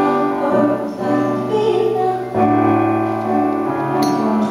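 A woman singing a slow ballad into a handheld microphone, holding long notes, with a piano accompaniment underneath.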